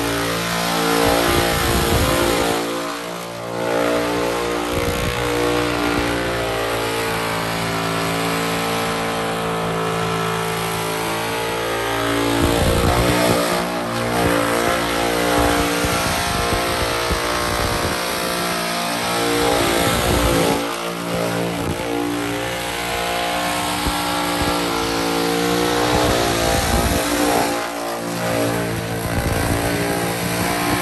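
Burnout car's engine held at high revs with its rear tyres spinning against the pavement, in a long continuous burnout, with a few brief drops in revs along the way.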